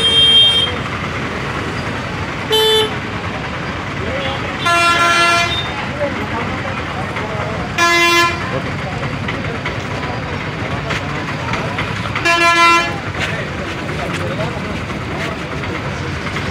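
Vehicle horns toot five times in street traffic, one short and the others lasting up to about a second, over a steady din of traffic and crowd voices.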